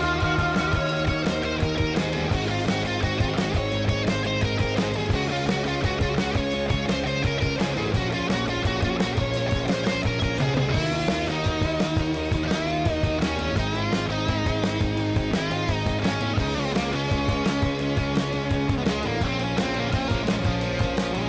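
Rock song playing: drums and bass under electric guitars, with a lead guitar line whose notes glide up and down in pitch.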